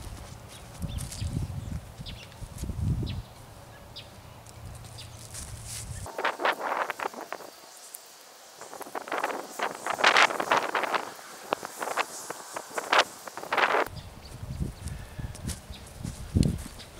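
Footsteps on dry ground for the first few seconds. Then hand pruning of a small scrub tree: a dense run of short sharp cuts and snaps of small limbs with rustling brush, loudest about ten seconds in.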